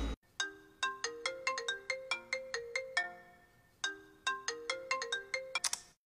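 Mobile phone ringtone: a quick melody of short ringing notes, played through twice, that cuts off abruptly just before the end as the call is answered.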